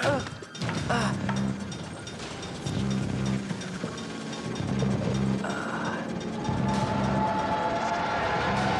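Animated-series action sound effects: metallic mechanical clanking and ratcheting over a repeating low pulse. A steady tone joins in near the end.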